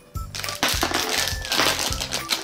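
A foil blind bag crinkling as it is torn open by hand, in bursts about half a second in and again near the end, over background music with a steady beat.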